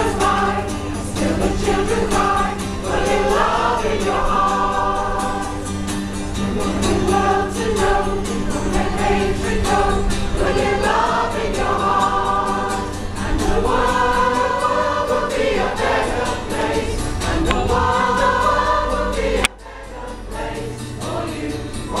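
A mixed amateur choir singing a rock song in unison phrases, accompanied by a strummed acoustic guitar. The sound breaks off abruptly near the end and comes back quieter.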